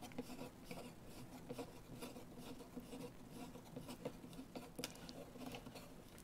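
Faint scratching and light ticks of an M8 bolt being turned in a 1-2-3 block, working the block out of its tight-fitting seat.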